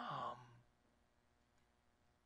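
A man's voice trailing off in a drawn-out, breathy end of a word in the first half second, then near silence: quiet room tone.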